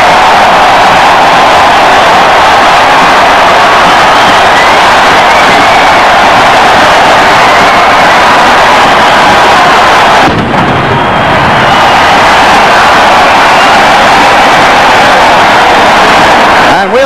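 A huge football stadium crowd cheering loudly and steadily at the end of the game, heard through an old television broadcast's audio. About ten seconds in, the roar briefly drops out and changes before it comes back.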